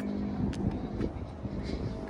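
Low steady outdoor background rumble with a couple of faint clicks.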